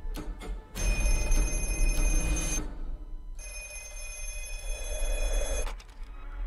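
Telephone bell ringing twice, each ring about two seconds long with a short pause between, over a low rumbling film score.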